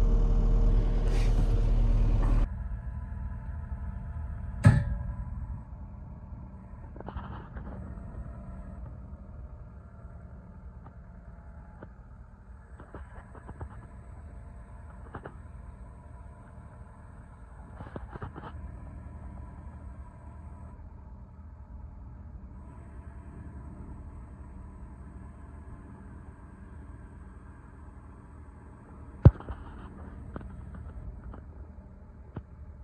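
Diesel engine of a New Holland tracked skid steer running steadily while it takes the weight of a stuck pickup's rear on a chain. It is loud from inside the cab for the first couple of seconds, then quieter as heard from outside. Scattered sharp clicks and knocks come over it, the loudest about five seconds in and another near the end.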